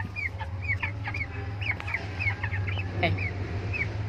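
Young white broiler chickens peeping, short falling chirps about three a second, over a steady low hum.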